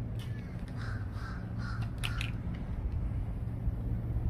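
A bird calling outdoors, a few short calls in quick succession about a second in, over a steady low hum, with a couple of brief clicks around two seconds in.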